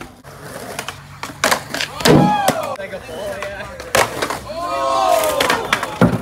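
Skateboard rolling and clattering, with sharp knocks about one and a half, two and four seconds in, and people shouting in between.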